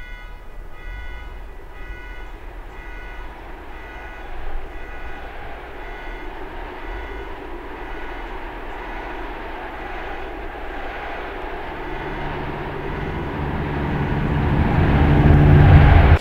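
A low rumbling noise that swells steadily, loudest near the end, then cuts off suddenly. Over the first half, a high beep pulses about twice a second and fades out.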